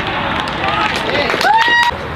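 Players and onlookers shouting and calling out at a football match, ending in a loud, high, held shout that cuts off suddenly just before the end.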